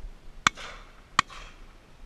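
Shotgun fired twice in quick succession, the shots less than a second apart, each a sharp crack with a brief echoing tail.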